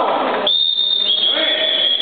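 A sports whistle blown in a short blast and then a long, steady blast, signalling a halt in a full-contact karate bout.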